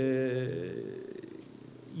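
A man's drawn-out hesitation vowel ("eee") into a microphone, held steady for about half a second and then trailing off.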